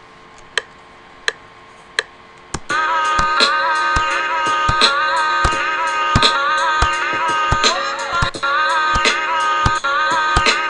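FL Studio's metronome precount, a few clicks about 0.7 s apart. At about 2.7 s a programmed hip-hop drum pattern comes in. Over it, a chopped sample sliced in Slicex is played live from a MIDI keyboard while being recorded.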